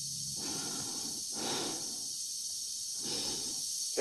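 Slow breathing inside a spacesuit helmet, about three breaths, over a steady hiss.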